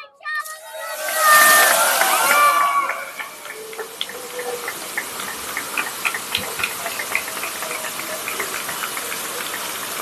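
A crowd cheers and shouts for the first few seconds as spark fountains go off, then the fountains keep up a steady hiss with many small crackles.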